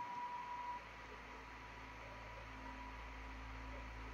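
Faint steady low electrical hum with a light hiss: room tone, with no other distinct sound. A faint high tone fades out within the first second.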